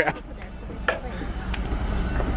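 A mini-golf putter striking a golf ball once with a short light click about a second in, over a steady low hum.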